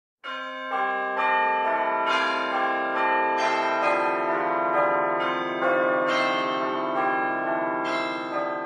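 Bells ringing: a run of struck bell tones, one about every half-second, ringing on over one another into a continuous peal that starts after a moment's silence and begins to fade near the end.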